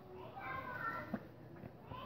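Faint voices in the background, sounding like children at play, wavering through the first second, with one short click a little after one second in.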